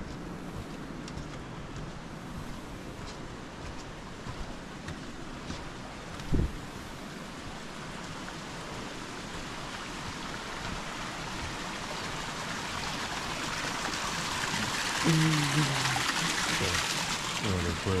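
Running water from a stream: a steady rushing hiss that grows steadily louder through the second half. A single short low thump comes about six seconds in.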